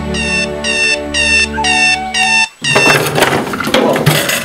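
Electronic alarm-clock beeping, about two high beeps a second, over a held music chord. Both cut off suddenly about two and a half seconds in, followed by a noisy clatter of a school desk and chair being jostled.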